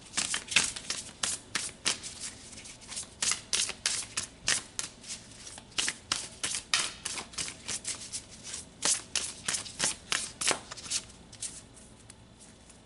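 A deck of tarot cards being shuffled by hand: a long run of quick, papery slaps and flicks, several a second, stopping about eleven seconds in.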